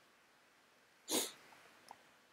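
One short, sharp breath through the nose from the person at the microphone, about a second in, against quiet room tone.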